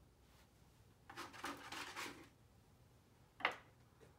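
A paintbrush worked in a cup of thick acrylic paint: about a second of scraping and swishing a little after the start, then one sharp tap near the end.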